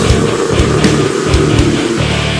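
Old-school death metal recording: heavily distorted electric guitars over drums, with kick-drum strokes in the low end.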